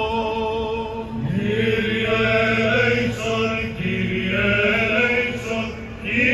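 Greek Orthodox liturgical chanting in the Byzantine style, with voices singing slow, held melodic lines. A steady low drone enters about a second in beneath the melody.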